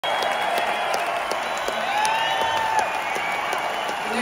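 A large concert-hall audience applauding steadily, with voices calling out above the clapping and one person's hand claps close by, a few a second.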